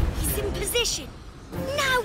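Wordless cartoon-character vocal sounds: short high-pitched whines that rise and fall, heard once in the middle and again near the end, after a low thump right at the start.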